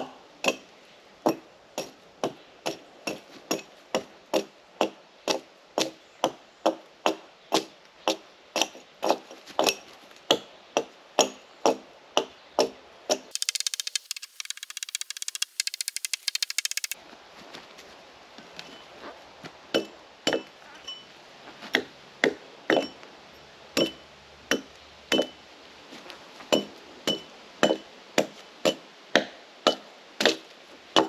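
Hatchet blade striking a cedar log again and again, chopping and peeling off bark, about two light strokes a second; many of the later strokes carry a short metallic ring. In the middle come a few seconds of faster, high-pitched clattering.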